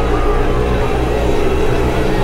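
Film soundtrack of a disaster scene: a loud, steady low rumble mixed with sustained low tones.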